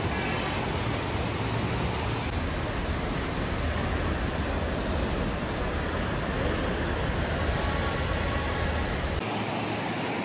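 Fast mountain river rushing over rocks in white-water rapids, a steady noise of fast water. The low rumble drops away about nine seconds in.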